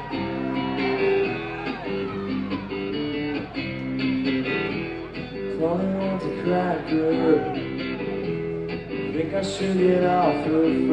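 Live concert music with guitar playing held chords and notes, one after another.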